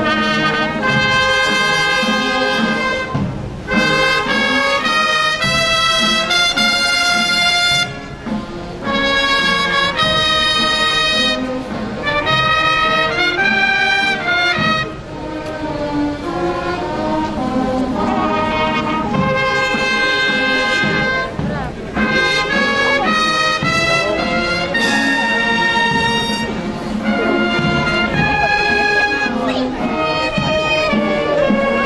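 Brass band playing in long held notes, the phrases separated by short breaks every few seconds.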